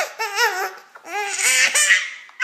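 Six-month-old baby laughing in high-pitched squeals: a short burst at the start, then a longer, louder one in the second half.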